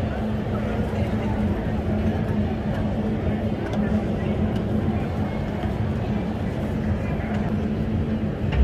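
City street ambience: traffic noise with a steady low engine hum and indistinct voices.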